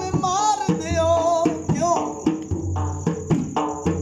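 A man singing a devotional qasida in a high, bending voice over his own dhol drum, a double-headed barrel drum beaten in a steady rhythm with deep booming strokes and sharp slaps. The singing drops out about halfway, leaving the drum.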